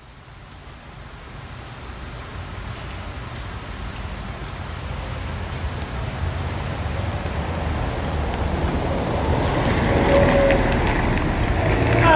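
A car driving in rain: low engine and road rumble under a steady rain hiss, fading in from silence and growing steadily louder. A short high tone sounds near the end.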